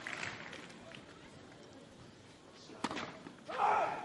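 Low hubbub of a tennis stadium crowd, settling after applause. About three seconds in comes a single sharp knock, a tennis ball bounced on the clay before the serve, followed by a brief voice.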